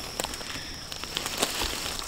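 Scattered light crackles and snaps of dry twigs and leaf litter as a rotting branch on the forest floor is grasped and moved, over a steady high-pitched insect drone.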